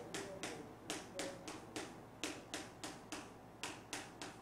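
Chalk tapping on a blackboard in a quick, uneven run of short strokes, about five a second, as small marks are jotted in one after another.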